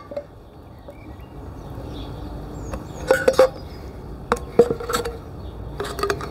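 Metal tool prying the lid off a metal tin of wood filler: a few short clusters of sharp metallic clicks and clinks, starting about three seconds in.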